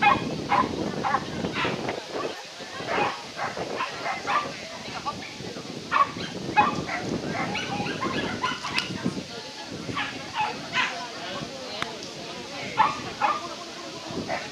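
Dogs barking repeatedly in short, sharp barks, some in quick clusters, over background voices.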